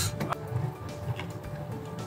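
Soft background music with faint held notes, over the low rumble of a car cabin on the move.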